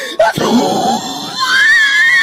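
A loud, rough scream starting about a third of a second in, giving way after about a second and a half to a high, wavering pitched tone.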